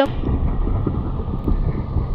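Steady low rumble of a moving car heard from inside its cabin: engine and road noise. It starts abruptly.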